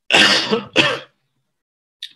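A man clearing his throat twice in quick succession, two short rasping bursts in the first second.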